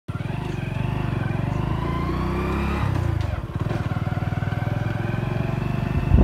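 A motorcycle engine running while riding. Its pitch climbs for the first few seconds, drops sharply about three seconds in as the revs fall, then holds steady.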